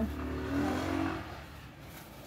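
A road vehicle accelerating past, loudest through the first second or so and then fading.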